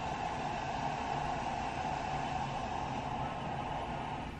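Steady rushing noise with a constant mid-pitched hum, which the occupant takes to be a toilet flushing in the hotel's plumbing.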